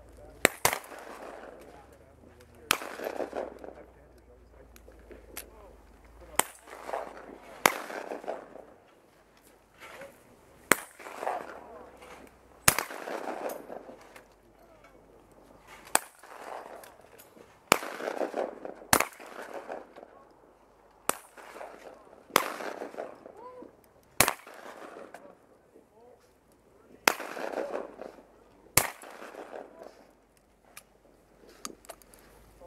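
Shotgun shots at clay targets on a trap range: more than a dozen sharp reports fired one at a time, spaced from about one to four seconds apart, as shooters take turns.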